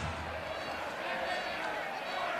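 Stadium crowd noise, a steady even hubbub of many voices with no single sound standing out.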